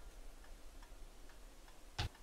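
Faint, regular ticking of a clock, about two ticks a second, over a low steady hum.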